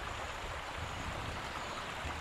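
Steady outdoor background noise: an even hiss with a low rumble underneath and no distinct events.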